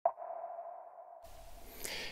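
A single ping-like tone with a sudden start that rings on and fades over about a second, as an outro logo sound effect. A faint steady hiss follows.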